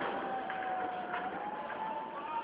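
Steady outdoor noise with one thin, high tone held throughout, stepping up slightly in pitch near the end, and a couple of faint knocks.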